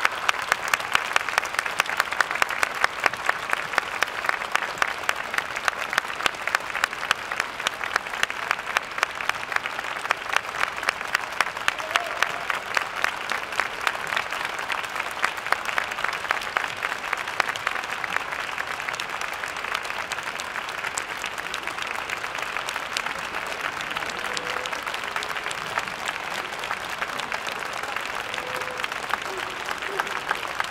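Audience applauding, with claps close to the microphone keeping an even beat of about two to three a second. The beat is strongest in the first half and softens later.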